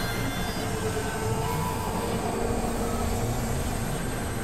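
Experimental noise music: a dense, steady wash of layered drones and noise at an even level, with faint scattered held tones drifting through it.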